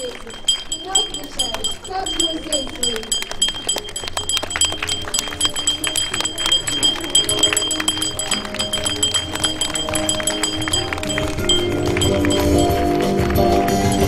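Small handbell rung continuously: a fast rattle of clapper strikes over a steady high ring, the traditional first school bell. It stops about eleven seconds in while a song plays underneath and grows louder near the end.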